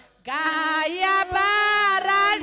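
A woman singing solo into a microphone, a worship song in long held notes. The voice drops out only for a moment at the start, then comes back in with a rising note.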